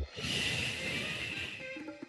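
A woman's long exhale close to a headset microphone, heard as a breathy hiss that fades away over about a second and a half. Background music comes back in near the end.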